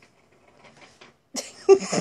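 Faint scattered rustles, then a short burst of a person's voice, the loudest sound, in the last half second.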